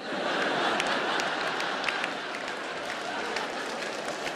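A large theatre audience applauding and laughing. It breaks out suddenly, with dense clapping, and eases off slightly toward the end.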